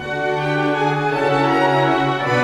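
Orchestral background music led by strings, playing held notes that change every second or so.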